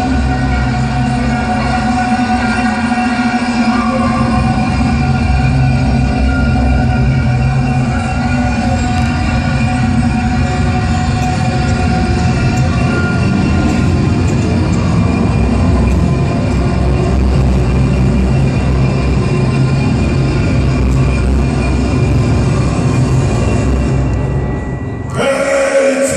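Black metal band playing live through a club PA: a loud, dense, unbroken wall of distorted guitars and drums with held tones, recorded from the crowd.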